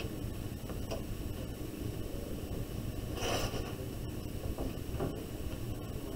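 Room tone: a steady low hum, with a short soft hiss about three seconds in.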